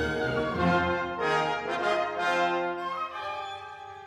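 Symphony orchestra playing a passage of held, overlapping notes, growing quieter about three seconds in.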